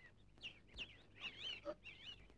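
Faint bird calls: several short, high, wavering chirps.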